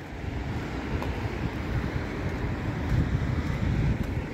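Road traffic passing, a rushing tyre noise that swells over the few seconds and eases near the end, with wind buffeting the microphone.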